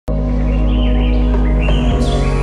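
Intro music: a held chord that starts just after the opening, with birds chirping over it.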